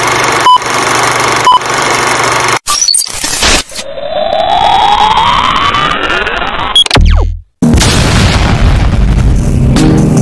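Intro sound effects for a film-style countdown: two short beeps about a second apart over a noisy bed, then glitchy hits. A long rising sweep tone follows, then a quick falling drop and a short cut to silence, after which music starts near the end.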